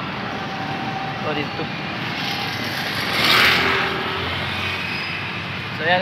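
Road traffic noise with a steady background rumble; about three seconds in, a passing vehicle's tyre and engine noise swells and then fades.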